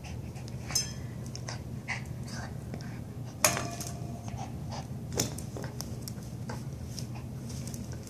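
Small dog shuffling against the bars of a playpen and a mattress, giving scattered light clicks and clinks. One sharper knock comes about three and a half seconds in, with a brief ringing after it, over a steady low hum.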